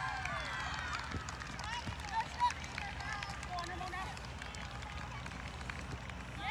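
Players' voices calling and shouting across an outdoor soccer field in short, scattered calls, over a steady low background hum. A couple of dull knocks come about one and two seconds in.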